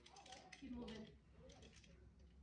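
Faint, indistinct speech from a person's voice, too quiet to make out the words.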